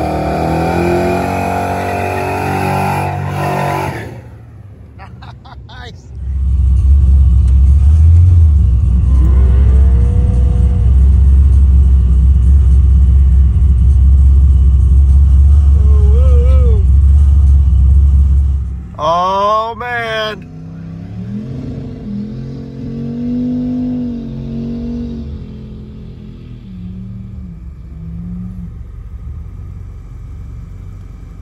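Cars doing burnouts: engines revved hard with the driven tyres spinning on the pavement. A pickup truck's engine runs loud at high revs at first, then a long, very loud deep rumble comes in about six seconds in and cuts off near two-thirds through, followed by revs rising and falling.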